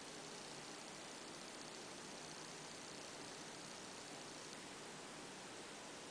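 Low, steady hiss of background noise with no distinct sound: room tone.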